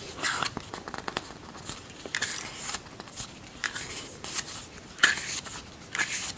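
Pages of a paperback booklet being turned and handled: a string of short, irregular papery rustles and flicks.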